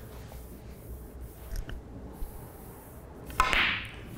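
A snooker cue strikes the cue ball with a sharp click about three and a half seconds in. A short rush of sound follows it. Before the shot there are only a few faint clicks in a quiet room.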